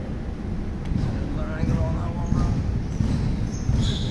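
Indistinct voices in a large hall over low, irregular thuds.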